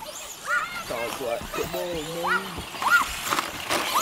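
Indistinct voices of people around the track: short calls and exclamations rising and falling in pitch, none of them clear words.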